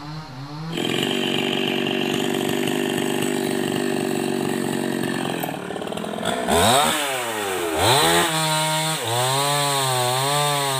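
Two-stroke chainsaw throttled up from idle about a second in and held at full revs, cutting into wood, for about four seconds. It is then revved down and up twice and drops back to a wavering idle.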